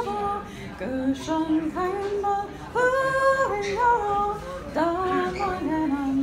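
A woman singing a Scottish Gaelic waulking song solo, her voice moving from note to held note through the phrase.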